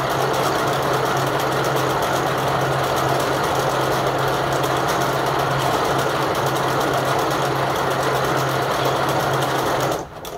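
Steeger USA vertical harness braiding machine running at speed, its bobbin carriers circling the braiding deck with a dense, rapid rattle over a steady low hum. It stops suddenly at the very end, when the braid has reached the harness's first branch.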